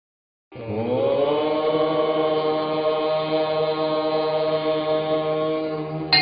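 Chanting: one long held note that begins about half a second in, slides up in pitch at its start, then holds steady.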